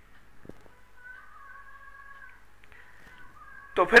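A faint, drawn-out, high-pitched call in the background, held for about a second and a quarter before trailing off, over a low steady room hum. Speech resumes near the end.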